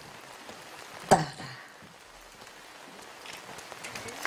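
A woman speaks one final word into a microphone about a second in. Then, over a steady low hiss, scattered hand claps begin near the end as an audience starts to applaud the finished poem recitation.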